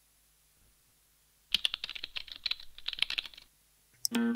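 Rapid computer-keyboard typing: a quick run of clicks lasting about two seconds, starting about a second and a half in, with near silence before and after.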